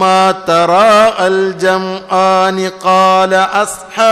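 A man chanting a melodic religious recitation: a string of long held notes on nearly the same pitch, broken by short pauses and brief glides between notes.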